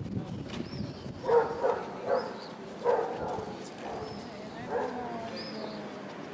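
A dog barking several short times about a second to three seconds in, with people talking and faint high bird chirps around it.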